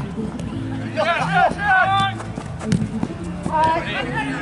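Players shouting during an amateur football match: loud, high-pitched shouted calls about a second in and again near the end, over a steady low hum.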